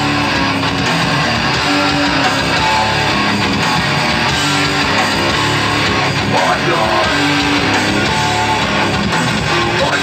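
Hardcore punk band playing live at full volume, distorted electric guitars in a dense, steady wall of sound.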